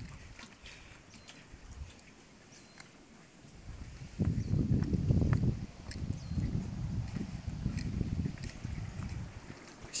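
Seawater surging and sloshing through a narrow lava-rock channel. It is a low, irregular rush that swells up suddenly about four seconds in, after a quieter start.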